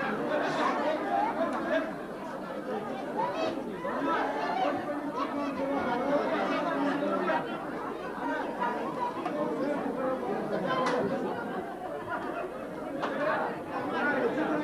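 Crowd of children and adults chattering at once, many voices overlapping into a steady babble with no single voice standing out.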